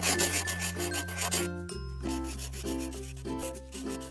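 Background music: sustained bass notes that change chord about every two seconds under short, repeated plucked notes and a fast, even scratchy rhythm.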